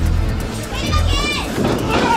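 Wrestling crowd noise with a child's high-pitched shout about a second in, over music.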